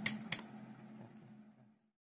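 Two sharp plastic clicks about a third of a second apart as the plug-in power adapter on a mains power strip is handled, cutting power to the temperature controller. A low steady hum runs underneath and fades away.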